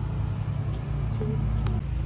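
Steady low rumble of machinery with a constant low drone and a faint high whine over it, which the shopper takes for construction work.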